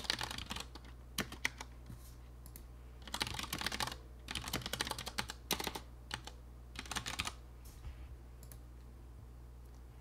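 Typing on a computer keyboard in several short bursts with pauses between them, over a steady low hum.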